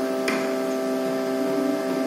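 A steady Carnatic shruti drone holding its pitch, with one short click about a quarter second in.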